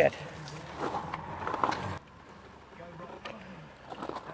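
Rustling of leaves and soil as a freshly pulled turnip is tossed onto the garden, with a couple of soft knocks in the first half. After an abrupt cut about halfway, only a faint outdoor background remains.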